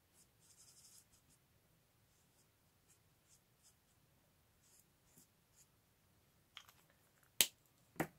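Faint scratching of a felt-tip marker drawing short strokes on cardstock, with a few light ticks. Near the end comes a sharp click, the loudest sound, as the marker is set down on the table.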